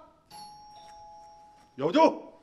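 Two-tone ding-dong doorbell chime: a higher note, then a lower one about half a second later, both ringing on for about a second.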